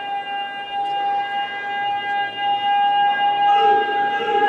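Public-address feedback howl: one steady high-pitched tone with overtones, holding a single pitch without wavering and cutting off just after the end.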